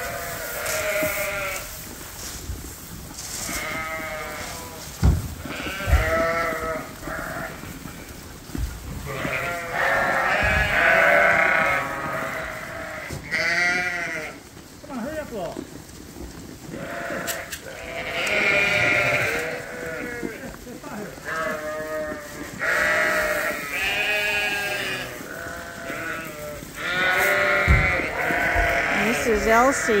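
Dorset sheep and lambs bleating over and over at a hay feeder, many short calls overlapping throughout, with a few dull low knocks in between.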